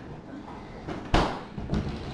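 A single sharp knock a little over a second in, with a short ring after it, over the low background of a kitchen.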